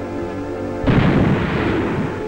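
Underwater explosive charge detonating for a seismic survey: a sudden blast a little under a second in, its rushing noise lasting to the end, over background music.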